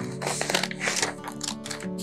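Background music with held notes, over a series of sharp snips from scissors cutting through a paper photo print.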